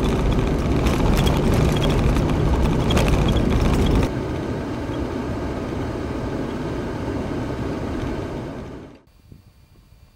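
Vehicle driving on a gravel road: steady engine and tyre rumble with many small clicks of gravel, loudest over the first four seconds, then quieter and steadier until it cuts off about nine seconds in.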